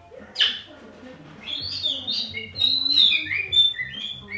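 A short loud burst, then a sulphur-crested cockatoo singing a run of high whistled notes that step up and down, dropping lower towards the end.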